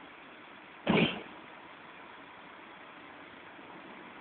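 A single crash of waste glass bottles smashing, about a second in, dying away within half a second, over the steady hum of an idling engine.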